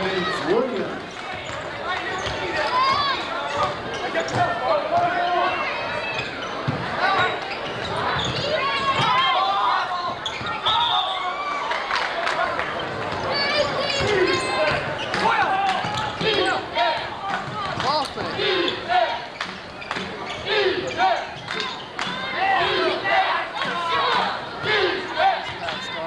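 A basketball being dribbled and bouncing on a hardwood court during play, a quick series of sharp bounces, over a constant hubbub of indistinct voices from players and spectators in the gym.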